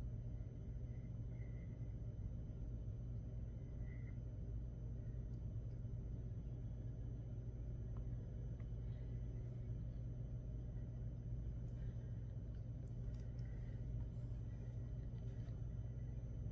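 Quiet room tone: a steady low electrical hum, with a few faint small clicks.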